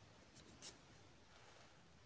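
Near silence, with the faint scratch of a pen writing on a paper workbook page and one slightly louder stroke about two-thirds of a second in.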